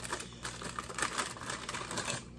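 Clear plastic rice-cake bag crinkling and crackling in the hands as a rice cake is worked out of it: a run of quick, irregular crackles.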